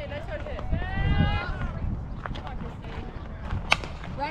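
A softball bat strikes a pitched ball with one sharp crack near the end. About a second in, a voice calls out.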